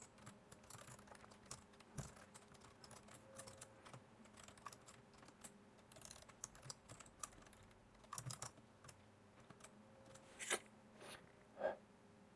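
Faint typing on a computer keyboard, irregular keystroke clicks, with a couple of louder clicks near the end.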